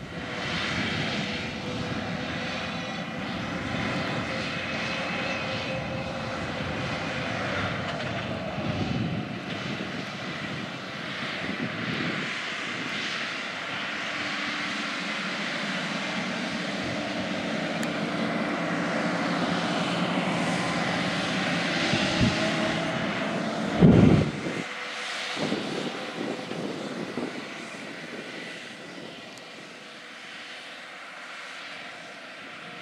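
John Deere R4045 self-propelled sprayer's diesel engine droning steadily as the machine runs across the field at speed, with a brief loud low thump about 24 seconds in.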